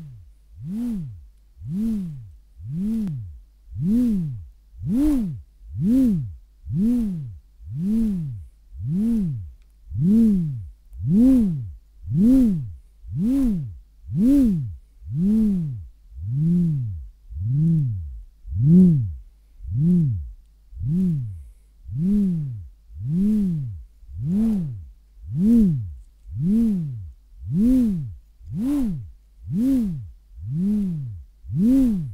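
Handmade wooden buzzer (button whirligig), its wooden disc spun on a twisted cord between two handles: a buzzing hum that rises and falls in pitch about once a second as the disc spins up and slows with each pull and release of the cord.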